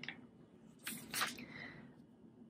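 A glossy magazine page being turned: a short paper rustle about a second in, in two quick swishes that fade away.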